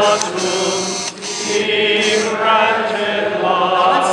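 A congregation of men and women singing a chant together, unaccompanied, with voices wavering in vibrato. There is a short breath-pause a little after one second.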